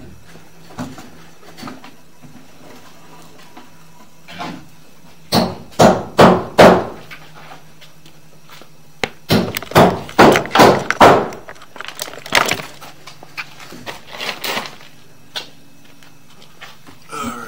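An irregular series of sharp knocks and bangs, some coming in quick clusters of two to four, over a faint steady low hum.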